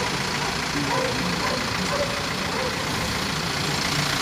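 Steady city street traffic noise: vehicle engines running and idling.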